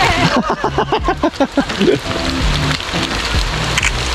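Excited voices of several people, a quick run of rising-and-falling calls in the first half, over a steady hiss of rain.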